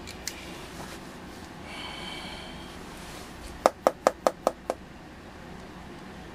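About six quick, evenly spaced clicks, roughly five a second, from the front-panel controls of an RCA Senior VoltOhmyst vacuum-tube voltmeter being turned through several detent positions while the meter is set up for zeroing.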